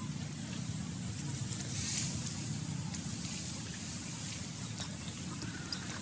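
A steady low rumble of background noise, with faint splashes and small clicks of shallow water as monkeys wade in a muddy puddle; a brief louder rush comes about two seconds in.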